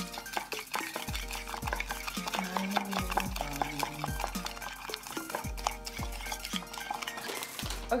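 A spoon stirring a thin batter of melted butter, egg yolk and sugar in a ceramic mug, with many quick clicks and scrapes against the sides. Background music with a deep bass line plays underneath.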